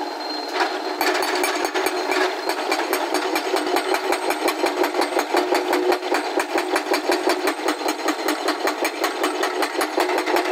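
Hydraulic breaker hammer on a Hyundai crawler excavator pounding quarry rock in fast, evenly spaced blows, settling into a steady rhythm about a second in. The excavator's diesel engine runs underneath.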